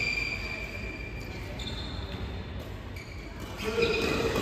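Badminton players' shoes squeaking on the court mat during a rally: one squeal right at the start that fades over a second or so, a fainter one midway, and another near the end.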